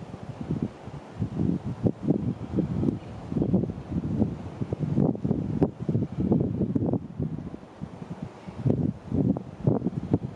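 Wind buffeting the camera's microphone in irregular low gusts that start abruptly and come and go.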